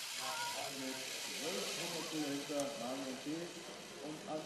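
Faint voices in the background over a steady hiss.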